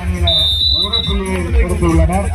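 A man's voice speaking loudly amid a crowd, with a steady high-pitched tone sounding for about a second near the start.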